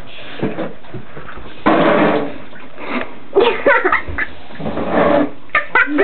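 A water squirt gun fed from an attached two-litre bottle fires a jet of water against the walls of a shower/tub. There is one spray burst about two seconds in, lasting under a second, followed by a few short voice sounds.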